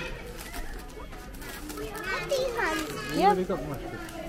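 Children's voices: after a quieter start, a child talks in a high voice from about halfway through.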